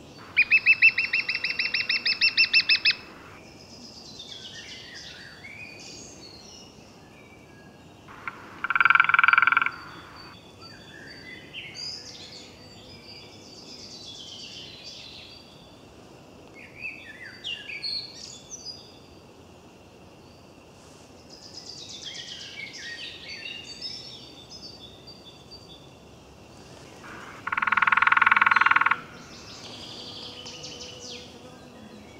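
Woodland birdsong with scattered chirps and warbles. Three loud calls stand out: a rapid pulsed trill in the first three seconds, one short call about nine seconds in and another near the end.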